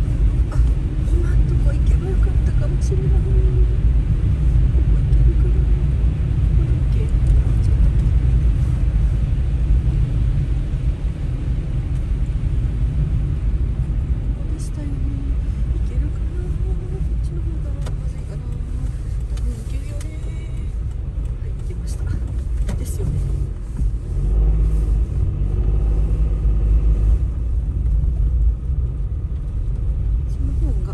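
Car driving on a wet, slushy road, heard from inside the cabin: a steady low rumble of engine and tyre noise.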